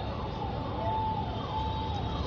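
A faint siren wailing, its pitch rising and falling, over steady outdoor background noise.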